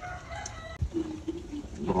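A rooster crowing faintly: one crow of about a second and a half that drops to a lower pitch partway through.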